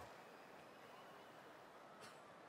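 Near silence: a faint, even hiss.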